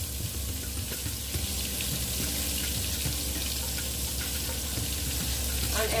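Battered catfish fillets frying in hot oil in a stainless steel pan: a steady sizzle, with a low hum underneath.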